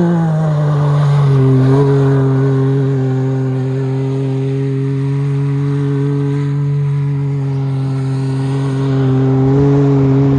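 Can-Am Maverick X3 side-by-side's turbocharged three-cylinder engine held at high, steady revs as the machine slides around on studded tyres on lake ice. The pitch dips slightly about a second in and climbs a little again near the end.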